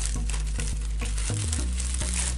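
A clear plastic comic-book sleeve crinkling and rustling in short irregular crackles as it is worked open by hand.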